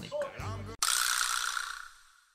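An edited-in transition sound effect: a sudden bright, noisy hit a little under a second in that fades away over about a second and a half.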